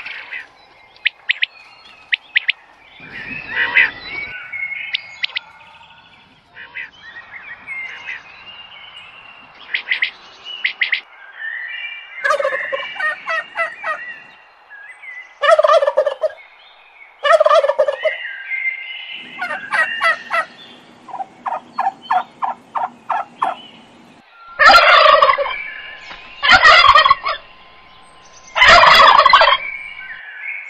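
Turkeys gobbling: repeated bursts of calls, including a quick rattling run, building to three loud gobbles about two seconds apart near the end, with thin high chirps in between.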